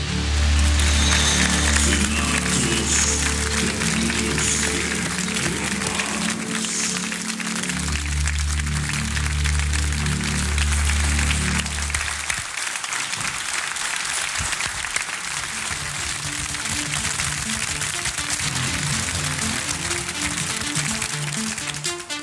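1980s Euro-disco pop song playing with a heavy bass beat, which drops out about twelve seconds in; a studio audience applauds through the rest, with quieter music continuing underneath.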